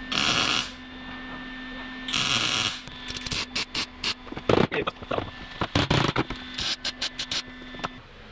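Lincoln Electric wire-feed welder tack-welding thin sheet-steel panels: crackling bursts of arc, two of about half a second each, then a quick run of many short stuttering tacks, over a faint steady hum.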